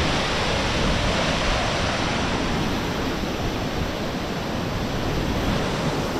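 Steady rushing noise of wind buffeting the microphone, over water running through the rock channels and pools.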